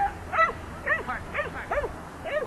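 Bedlington Terrier barking repeatedly in short, sharp yips about half a second apart while running an agility course.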